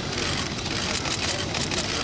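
Steady outdoor background noise, with a quick run of faint clicks in the second half.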